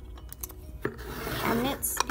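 Small plastic toy pieces being handled: a few light clicks, then a sharper click just before the middle and a stretch of plastic rubbing and scraping.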